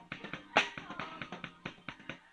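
Drum kit played in a fast, busy groove of quick snare and cymbal strokes, with one loud accented hit about half a second in, over other instruments of the band.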